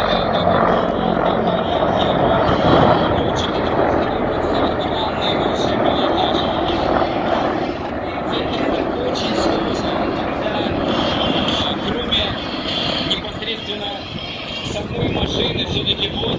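A formation of Russian military attack helicopters flying past, with steady rotor and engine noise that eases off somewhat in the second half.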